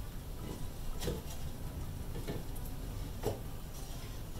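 Cedar boards knocking lightly against each other and the planter frame as they are set into the box bottom by hand: a few soft wooden clacks, the clearest about a second in and just after three seconds.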